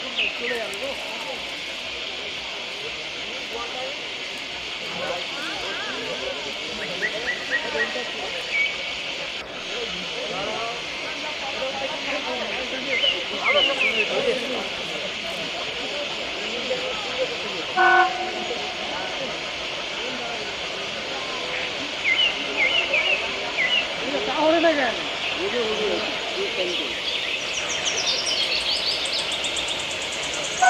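Diesel locomotive horn giving one short toot about two-thirds of the way in, over a steady hiss and scattered short chirping calls.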